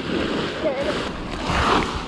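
Nylon tent fabric rustling as the tent is pulled out and spread open by hand.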